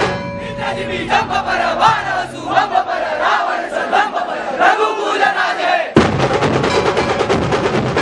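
A group of people chanting loudly in unison, their voices wavering together. About six seconds in, this cuts off suddenly and rapid percussion music with drums takes over.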